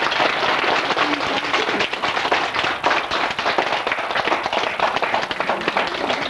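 Audience applauding: steady, dense clapping from many hands.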